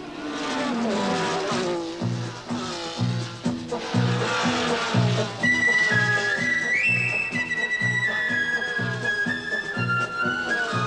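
1960s Formula One racing car engines passing at speed, their pitch falling as they go by. About two seconds in, film music takes over with a steady pulsing beat about twice a second, joined about halfway through by a high, flute-like melody.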